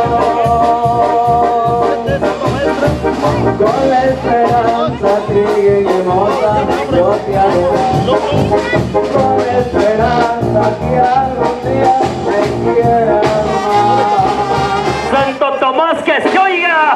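Brass band music, trombones and trumpets over a steady bass beat, playing throughout and stopping just before the end.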